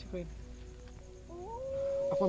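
A drawn-out wailing cry from a horror film's soundtrack. It glides upward in pitch about two-thirds of the way in and is then held, growing louder, over a low steady drone. A voice trails off at the very start.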